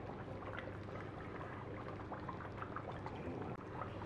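Chongqing mala hot pot broth bubbling in a divided pot, a steady simmer with many small scattered pops.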